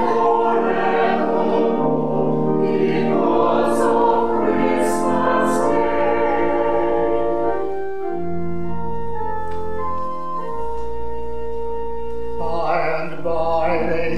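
Church choir singing a carol with organ accompaniment. About eight seconds in the voices stop and the organ holds steady chords alone, and the choir comes back in near the end.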